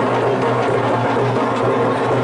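Live drum music playing steadily: a dense, continuous beat of drums and percussion with a steady low drone underneath.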